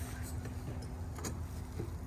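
A motor vehicle running, heard as a steady low rumble with a faint steady hum, and a few faint ticks.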